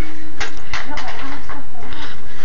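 Wind buffeting a phone microphone outdoors: a loud, even rumbling noise with a few short clicks, with faint voices in the background.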